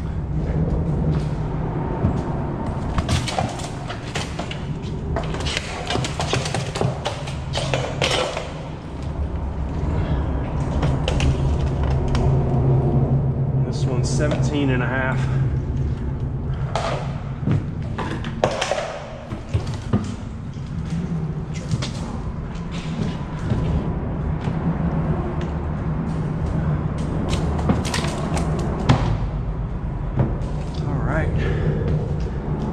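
Knocks and thumps of gear being handled on the deck of a small fiberglass skiff, over a steady low rumble.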